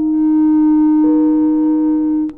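Clarinet holding one long, steady, almost pure-sounding note over softer held piano notes, with another note coming in about a second in.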